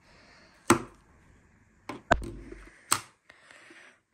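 Handling noise from a small plastic Vivitar digital camera as it is turned over in the hand and its swivel screen swung open: three sharp clicks or knocks, the middle one with a dull thump, over faint rustling.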